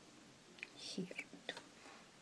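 Quiet speech: a woman softly saying "here too" about a second in, over faint room tone.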